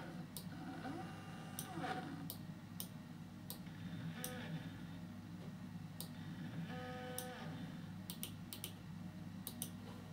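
Computer mouse clicking irregularly, a dozen or more sharp single clicks, over a low steady hum. Brief faint tones sound twice around the middle.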